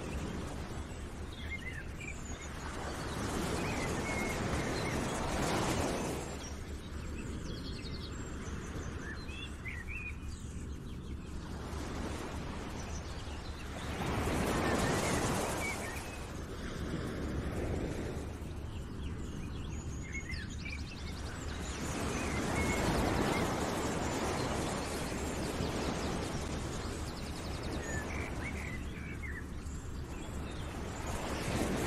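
Nature ambience: scattered short bird chirps over a rushing noise that swells and fades in slow surges about every eight to ten seconds.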